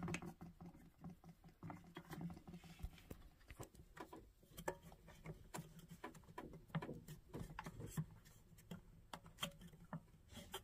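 Faint, irregular light clicks and taps of hard plastic: the toilet seat's plastic hinge brackets being handled and fitted against the porcelain bowl.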